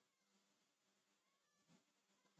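Near silence: a pause in the speech, with no audible sound.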